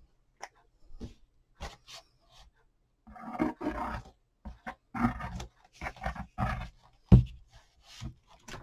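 A cardboard box being handled on a tabletop: rubbing and scraping of cardboard, with short knocks and the loudest thump about seven seconds in.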